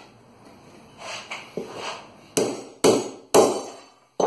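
Three sharp metallic strikes about half a second apart, the last two loudest with a short ring, as the thin edge of a hardened 8670 steel knife and a steel rod are struck together in a destruction test of the edge; a few softer knocks come before them.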